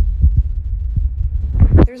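Handling noise from the phone that is recording: low rumbling thumps as it is gripped and moved, cutting off suddenly near the end.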